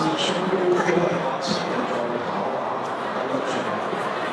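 A group of people chatting and laughing at once, voices overlapping over a steady crowd murmur, with one voice clearer in the first second.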